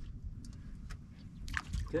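Light splashing and trickling water at the side of the boat over a steady low rumble, with a sharper splash about one and a half seconds in.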